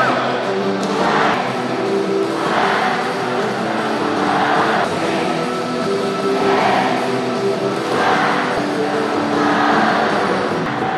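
Music with singing, with a brighter swell of voices coming back about every one and a half to two seconds.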